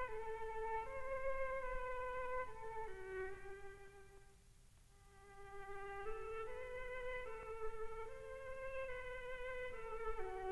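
A solo bowed violin plays a short, slow melody with vibrato. After a brief pause about halfway through, the same phrase is played again at the same pitch by a second string-quartet instrument, to show the difference in tone colour.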